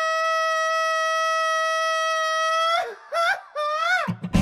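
Music: a wind instrument holds one long steady note for about three seconds, then plays three short notes that bend upward.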